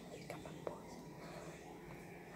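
Faint sticky clicks of a runny shower-gel and shampoo mixture being squeezed and pulled between fingers, one a little louder under a second in.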